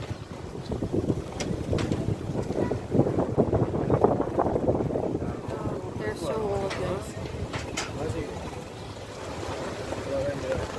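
Low rumble of a car moving slowly, heard from inside with the window open, with wind buffeting the microphone, voices in the background and a few sharp clicks.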